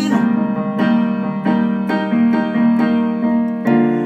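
Casio XW-P1 synthesizer on a piano voice, playing a solo fill of chords struck about every half second, each left ringing, with a fuller low chord near the end.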